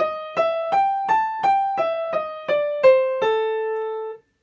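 Piano playing the A blues scale one note at a time, about three notes a second: it climbs to the top A about a second in, then comes back down and ends on a held A.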